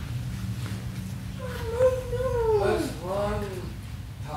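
A person's voice: one long, drawn-out call that holds its pitch with a slight waver and then falls away, followed by a shorter call that rises and falls.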